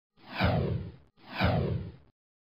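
Two identical whoosh sound effects, one straight after the other, each about a second long and sweeping downward in pitch.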